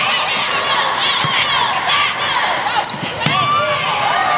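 Basketball game sound on a hardwood court: many short, high sneaker squeaks as players move, with a few sharp knocks of the ball and bodies, and voices calling out.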